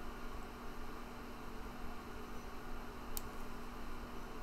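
Room tone: a steady faint hiss with a low hum, and one short click about three seconds in.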